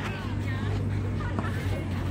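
Faint voices in the background over a steady low hum.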